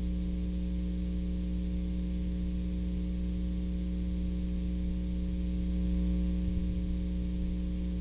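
Steady electrical mains hum over an even hiss of background noise.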